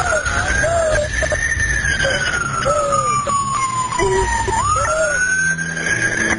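Emergency vehicle siren wailing: a slow rise and fall in pitch, climbing again about four and a half seconds in, with a shorter, lower tone repeating about once a second beneath it over a low rumble.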